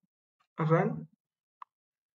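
A man's voice speaking a single word, followed about a second later by one short, faint plop.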